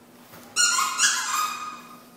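A dog's squeaky toy squeaked twice in quick succession as a Chihuahua puppy bites it: a short squeak about half a second in, then a longer one that fades out.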